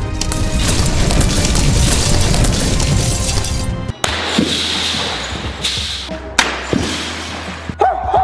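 A large glass panel shattering under a sledgehammer: a dense, loud crash of breaking glass for about four seconds, which stops suddenly. A few single clinks of glass shards follow.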